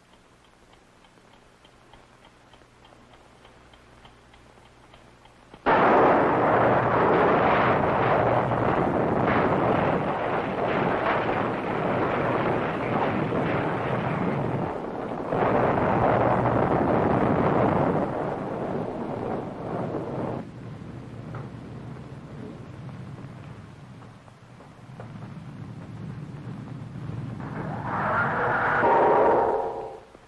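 A bomb explosion sound effect on an old film soundtrack. After a few seconds of faint hum, a sudden loud blast comes about six seconds in. It turns into a long noisy roar that surges again about ten seconds later, dies down to a rumble, then swells once more near the end and cuts off.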